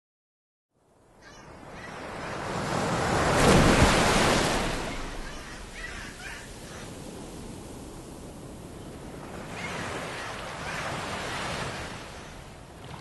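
Ocean surf and wind: silent for the first second, then a rushing swell that builds to its loudest about four seconds in and settles into a steady wash of waves, swelling again near the end.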